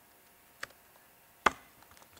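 Two separate keystrokes on a laptop keyboard: a faint tap about half a second in and a sharper, louder key press about a second and a half in.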